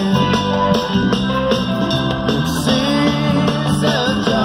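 A live rock band playing an instrumental passage with electric guitar over bass and drums, loud through the festival PA and heard from among the audience.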